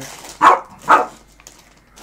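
A dog barking twice, the two barks about half a second apart.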